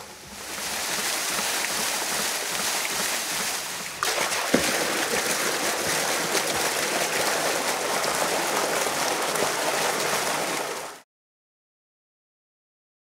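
Water gushing from a pipe outlet and splashing into a concrete tank: a steady rushing splash that cuts off suddenly near the end.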